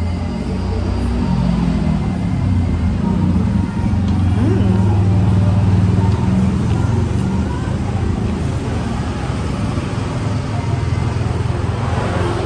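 A low, steady engine rumble, like a motor vehicle running close by. It builds over the first few seconds and eases slightly toward the end.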